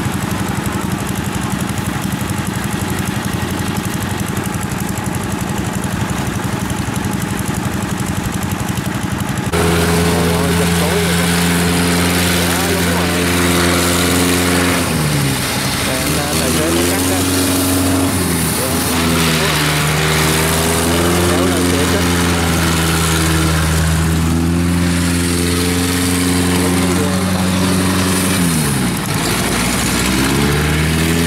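Farm diesel engines running steadily. About a third of the way in the sound gets louder as a tracked field carrier's diesel engine takes over, its pitch sagging and recovering about three times as it drives through deep mud.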